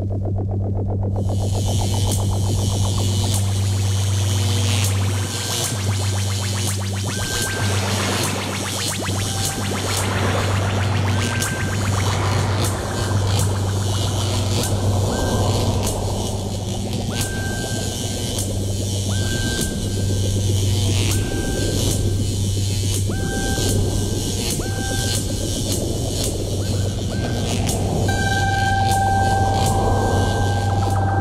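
Electronic music: a steady low hum-like drone, with a high hiss layer entering about a second in and scattered clicks through it. Short high beeping tones repeat more and more often in the second half, and a held high tone comes in near the end.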